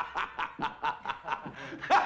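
A man laughing hard in rapid bursts, about five a second, easing off in the middle and surging again near the end.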